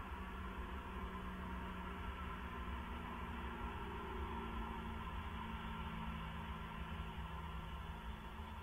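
Steady hiss with a faint low hum from an outdoor camera microphone; no owl calls.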